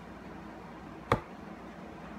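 A single short, sharp knock about a second in, over faint room tone.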